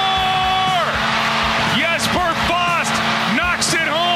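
Radio sports promo: a music bed with guitar under shouted play-by-play calls. A drawn-out call is held at the start and falls away just under a second in, followed by several short rising-and-falling shouts.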